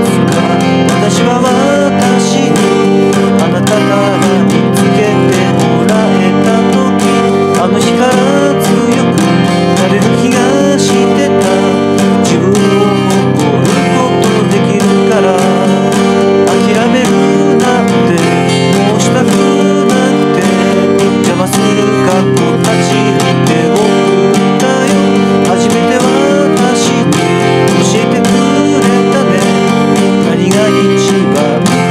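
Acoustic guitar strummed steadily, accompanying a solo voice singing a pop song.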